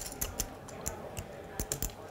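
Poker chips clicking together as a player handles them at the table: a quick, irregular run of light clicks.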